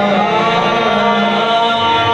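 Qawwali music: harmoniums holding steady chords under male voices singing.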